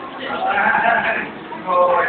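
A person's voice making drawn-out vocal sounds without clear words, twice.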